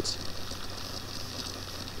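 Low steady hiss with a faint hum underneath: the background noise of a desktop recording microphone, with no other event in it.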